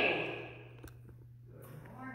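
A woman's voice ends a word and its echo fades out in a reverberant church hall, followed by a quiet pause with a steady low hum and one faint click about a second in.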